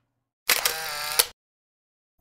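Camera shutter sound effect for a screenshot being taken, lasting just under a second and ending in a sharp click.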